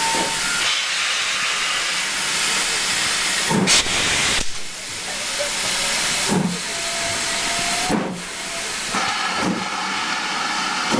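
GWR Manor-class steam locomotive 7802 starting away: a loud, continuous hiss of steam from its open cylinder drain cocks, with slow exhaust chuffs that come quicker as it gathers speed.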